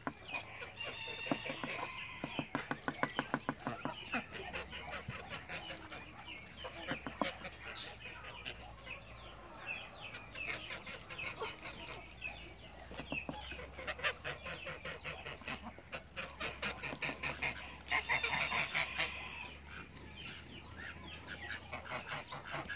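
Farmyard poultry calling: a busy, continuous run of short repeated calls, with louder spells about a quarter of the way in and again past the middle.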